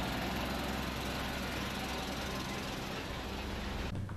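Heavy tanker truck's diesel engine running low with road noise as the truck rolls past, fading slightly.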